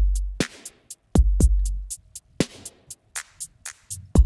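Programmed hip-hop drum loop playing back: deep kicks with long, booming low tails, with snare or clap hits and hi-hats between them. The drums run through a Pultec-style EQ on the drum bus, which is meant to make them a little more analogue.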